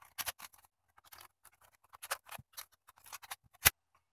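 Scattered light plastic clicks and scrapes from a smoke and carbon monoxide alarm's housing being handled to take its batteries out, with one sharp click near the end.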